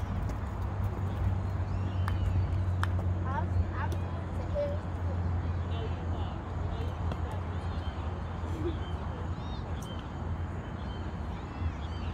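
Outdoor ambience: a steady low rumble with faint, distant voices and a few light clicks.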